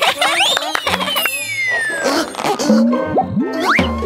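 Cartoon sound effects over children's background music: springy boings and whistle-like pitch slides, with one long falling slide early on and quick rising sweeps near the end.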